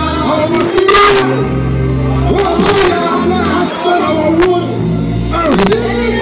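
Live gospel worship music: a woman singing lead into a microphone with backing singers, over a sustained bass line that shifts note every second or two and sharp percussion hits.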